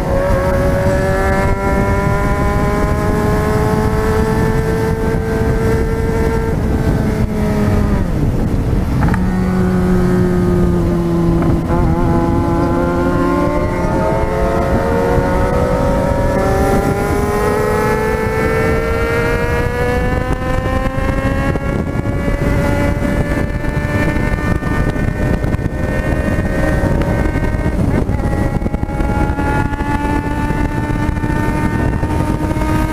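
Yamaha XJ6 inline-four motorcycle engine through an open, straight-piped exhaust, pulling hard at highway speed. Its pitch climbs, dips sharply about eight seconds in, climbs steadily again until about twenty seconds in, and then holds, with steady wind rush underneath.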